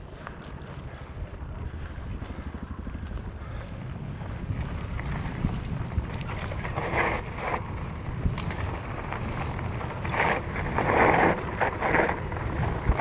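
Trek Fuel EX 9.8 27.5 Plus mountain bike rolling down dry dirt singletrack: a low rumble of the oversized tyres and wind on the microphone, growing louder as speed builds. In the second half come scrapes and knocks from the bike, loudest near the end.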